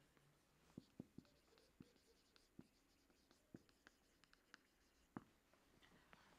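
Very faint marker strokes and taps on a whiteboard during handwriting: a scatter of soft ticks, the clearest one near the end.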